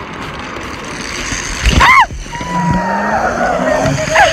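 Rider launching down a zip line: wind rushing over the microphone as the trolley runs along the cable, with a short cry about halfway through. After the cry a steady whine sets in, slowly falling in pitch.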